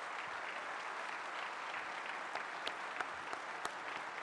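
Large audience applauding steadily in an auditorium, many hands clapping together with a few sharper individual claps standing out.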